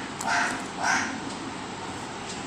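Short repeated animal calls, about half a second apart, over a steady background hiss.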